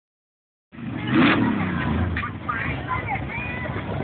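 Truck engine running with a low rumble, loudest in a swell about a second in, with people talking and calling out over it. The sound cuts in abruptly after a short silence at the start.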